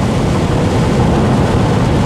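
Steady rushing road and wind noise inside the cabin of an Ora Funky Cat electric car at motorway speed, with tyres running on a rain-soaked road.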